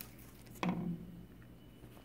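Quiet room tone with a faint, steady low hum and a few faint ticks, broken by a short spoken "oh" a little after half a second in.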